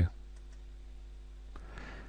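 Low steady electrical hum and faint room tone in a pause between spoken sentences, with a faint click about one and a half seconds in.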